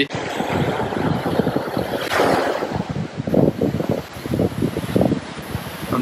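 Wind buffeting the microphone over the rumble of a passenger train passing close by.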